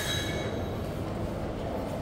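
Steady low background rumble, with a brief high-pitched squeal at the very start that fades within about half a second.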